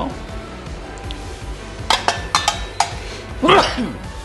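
Metal wok spatula clinking against an enamel bowl and a cast-iron wok as greens are scraped out of the bowl into the wok: a quick run of about five sharp clinks about two seconds in, over background music.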